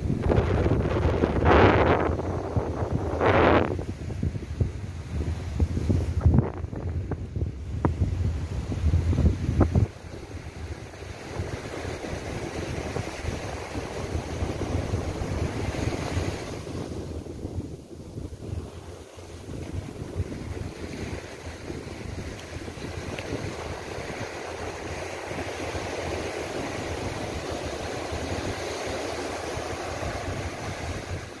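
Wind buffeting the microphone over the wash of small surf breaking on a sandy beach. The wind rumble is heavy and gusty for the first ten seconds, then drops suddenly, leaving the steady hiss of the surf.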